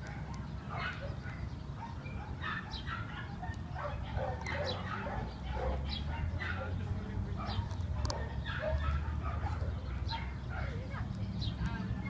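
Several dogs barking in the distance, many short barks overlapping at an irregular pace, over a steady low rumble.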